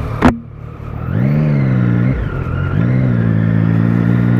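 Motorcycle engine accelerating, its pitch rising, falling back at a gear change about two seconds in, then rising again. A sharp knock just at the start.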